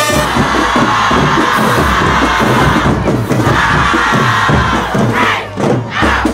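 A large group of marching band members shout together in a loud unison yell over a steady low drum beat, as the brass playing breaks off. A rising yell comes near the end.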